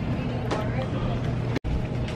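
Steady low hum of a large shop's indoor background noise with faint voices in it; the sound cuts out completely for an instant about one and a half seconds in.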